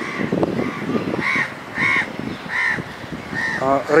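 A crow cawing repeatedly, about six caws spaced a little over half a second apart, over a low background murmur.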